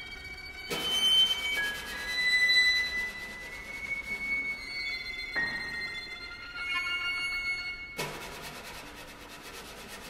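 Experimental contemporary chamber music from bowed violins and percussion: thin, high sustained tones overlap, and grainy, noisy sounds break in suddenly about a second in and again near the eighth second.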